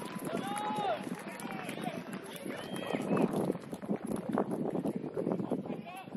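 Football players shouting to each other on the pitch, with the patter of running footsteps on grass. There are loud calls near the start and again about halfway through.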